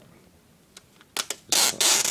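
Plastic packaging film being handled and peeled off a new iPad mini: a couple of light clicks, then loud rustling in short bursts in the second half.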